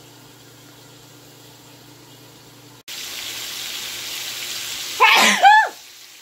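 A low steady hum gives way abruptly to ribeye steaks sizzling in a frying pan. Near the end a woman sneezes loudly, a two-part sneeze.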